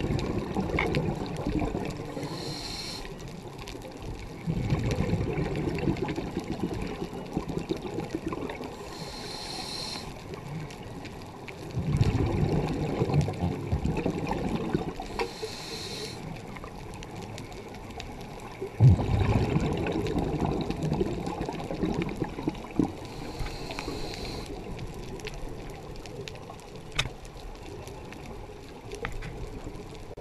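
A scuba regulator breathing underwater: a short high hiss on each inhale, then a long bubbling burst as the breath is exhaled. The cycle repeats about every seven seconds, four breaths in all, and the exhaled bubbles are the loudest sound.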